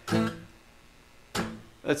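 Acoustic guitar strummed twice: a chord at the start that rings and fades within about half a second, then a second strum about a second and a half in.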